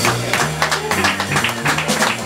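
Live jazz from a piano trio: the upright double bass plays a line of short low notes under a run of quick drum and cymbal strikes.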